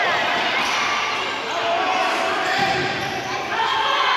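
Voices of spectators and players calling out over one another in an echoing sports hall, over the thuds of a futsal ball being kicked and bouncing on the court.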